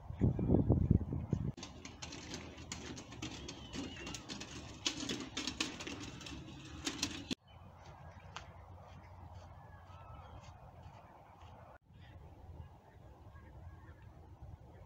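Birds chirping and calling, thickest through the first half. It opens with about a second of loud low rumbling. About seven seconds in the sound cuts off sharply to a quieter stretch with only faint, scattered chirps.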